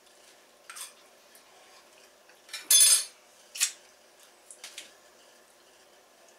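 A fork scraping and clinking against a dinner plate in a handful of short strokes, the loudest a little before halfway through.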